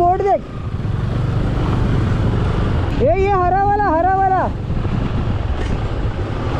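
Benelli TRK 502's parallel-twin engine running steadily as the motorcycle rides along at low speed, heard from the rider's helmet camera. About three seconds in, a voice gives a drawn-out shout for a second and a half.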